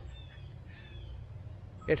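A bird calling faintly twice, short thin descending notes, over a steady low machine hum.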